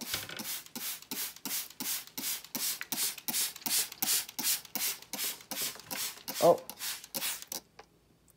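Hand spray bottle misting a frog terrarium: a rapid run of short hissing sprays, about three a second, that stops just before the end.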